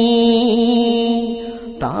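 A singer's voice holding one long, steady note at the end of a line of a Malayalam memorial song, fading away, then starting the next line just before the end.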